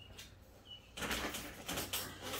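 Two faint short high chirps, then from about a second in a loud rustling of cloth as a T-shirt is handled and put down and the next garment is picked up.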